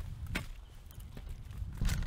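Footsteps on loose flat stones and dry grass stalks: a few separate crunching steps over a low rumble.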